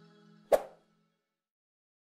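The last faint tail of outro music fades away. About half a second in, a single sharp click-pop sound effect marks a cursor clicking a subscribe button.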